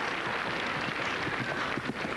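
Steady outdoor arena background noise with faint, irregular hoofbeats of a horse cantering on grass.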